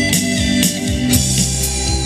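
Live band playing an instrumental break of a slow ballad: a picked electric guitar lead over organ-toned keyboard and a steady drum beat with regular cymbal hits.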